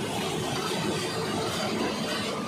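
Horizontal peeler centrifuge running steadily while it discharges dewatered maize flakes down its chute: an even, unbroken mechanical noise.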